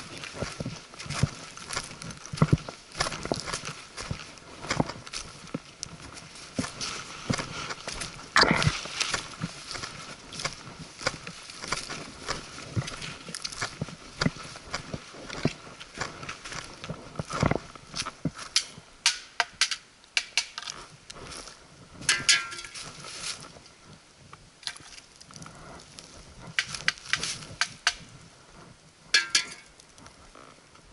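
A hiker's footsteps crunching through dry leaf litter and twigs on a forest path, with the clicks and knocks of a hiking pole. The steps are irregular, with several sharper knocks among them.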